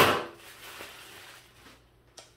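Packaging being pulled open by hand: a loud, brief rush of paper-like noise at the start, dying away into softer rustling over the next second.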